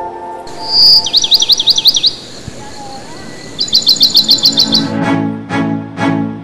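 Songbird calling: a clear whistled note, then a quick run of high chirps, and a second, steadier run of about a dozen rapid chirps a couple of seconds later. Background music fades under it and bowed strings come in near the end.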